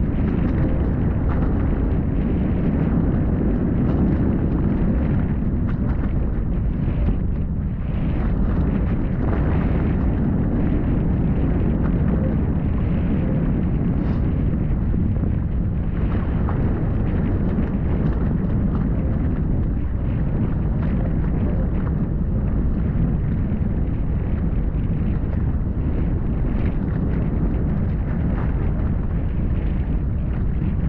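Wind buffeting the camera microphone: a loud, steady, low rumble that stays at an even level throughout.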